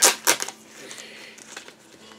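A 7-inch vinyl single's sleeve being handled and turned over in the hands: a few sharp crinkly rustles in the first half second, then faint soft handling noise.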